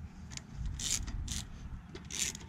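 Socket ratchet on an extension clicking in short bursts, about two a second, as it backs out the 8 mm bolt holding a GY6 scooter's fuel petcock.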